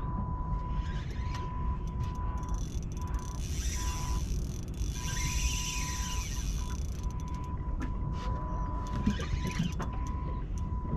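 Wind rumble on the microphone with a thin, steady whine from an electric bow-mount trolling motor that keeps cutting out and coming back. A higher hiss rises for a few seconds midway while a fish is being fought on the rod.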